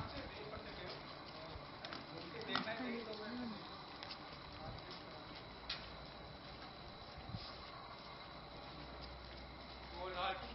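Faint outdoor background with a few distant, indistinct voices about two to three seconds in, and a few light clicks.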